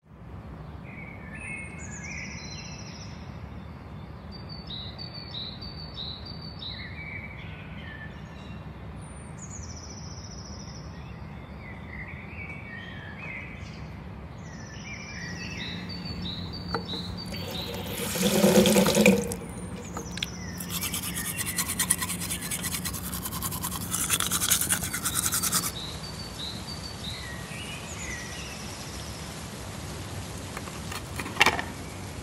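Birds chirping again and again over a steady low hum. About halfway through, a bathroom tap runs water into a basin, the loudest part, then a toothbrush scrubs rapidly for about five seconds.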